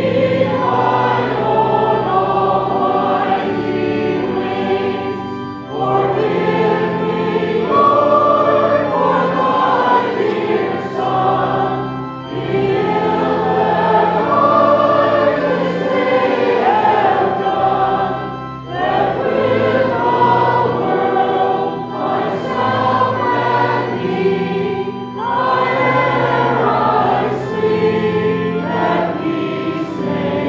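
Congregation singing a hymn with organ accompaniment, in phrases of about six seconds with short breaks between them.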